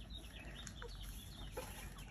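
Chickens clucking faintly, a few short soft calls.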